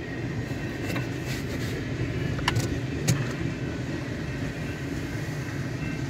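Freight train of double-stacked container cars rolling past, a steady low rumble heard from inside a car, with a few sharp clicks.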